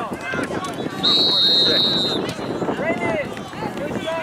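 A referee's whistle blowing one long, steady blast of just over a second, starting about a second in, over voices calling across the field.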